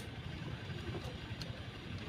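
Faint clicks of a plastic car side-mirror housing being worked loose by hand, over a low, steady background rumble.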